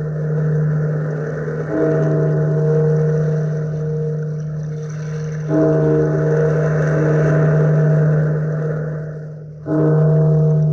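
A large bell tolling slowly, struck three times about four seconds apart, each stroke ringing on into the next, over a steady rushing noise.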